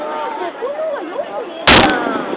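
An aerial firework shell bursting with a single loud bang near the end, over continuous chatter of spectators' voices.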